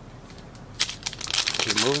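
Foil wrapper of a 2023 Panini Prizm Draft Picks card pack crinkling as fingers tear it open, starting about a second in.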